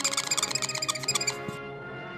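Dry-erase marker squeaking on a whiteboard as a drawing is sketched: a rapid run of short, high squeaks that stops about a second and a half in, over background music.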